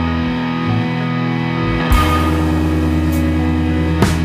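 A live band playing: electric guitars over sustained bass notes and drums. There is a sharp hit with a ringing tail about two seconds in and another at the end.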